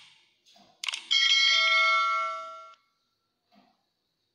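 Subscribe-button animation sound effect: a quick mouse click about a second in, then a bell-like notification chime that rings for about a second and a half, fades and cuts off.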